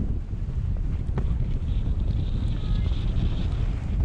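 Wind buffeting the microphone of a skier moving downhill, a loud steady low rumble. A higher hiss of skis on snow comes in about halfway through and eases off near the end.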